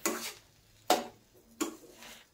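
Flat metal spatula scraping and knocking in a stainless steel kadai while stirring semolina and vegetables as they roast dry: three short strokes, one at the very start, one about a second in and one near the end.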